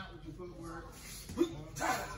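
Indistinct voices of karate students drilling in pairs, with a sharp snap about one and a half seconds in and a short, loud shout just after it, near the end.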